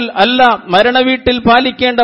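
A man speaking without pause in a sermon-style monologue; only speech.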